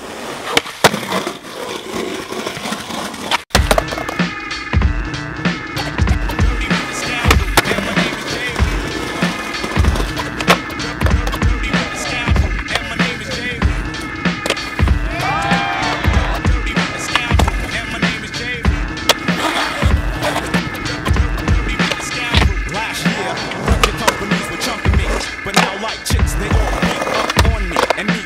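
Skateboard wheels rolling on concrete, with clacks and knocks of the board. About three and a half seconds in, after a sudden cut, a hip-hop instrumental with a steady bass beat starts and carries on through the rest.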